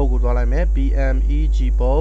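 Loud, steady electrical mains hum on the recording, under a man's voice talking.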